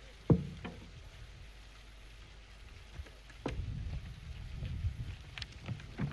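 Low-level noise on an open outdoor microphone: one sharp thump about a third of a second in, then from about three and a half seconds an irregular low rumble with small knocks.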